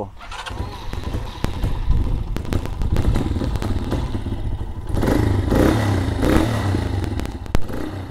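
Honda NX 150's single-cylinder four-stroke engine running at idle just after starting on freshly changed oil, with a louder stretch about five seconds in and a few sharp clicks.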